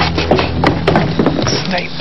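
Voices speaking over background music with steady low notes.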